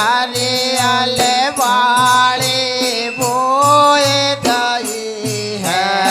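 Men singing a Bundeli Ramdhun devotional folk song in long, gliding held notes, with a dholak drum keeping a steady beat.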